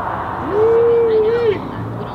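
A person's voice giving one drawn-out, hoot-like "oooh" about a second long, starting about half a second in, over a steady background hiss.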